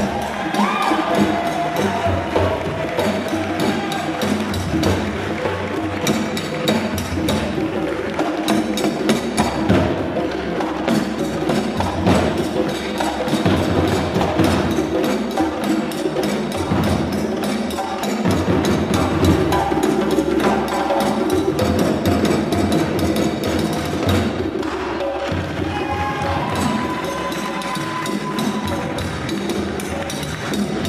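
West African drum ensemble of djembes and dunun drums playing a steady, dense rhythm, with a sharp repeated click riding over the drums.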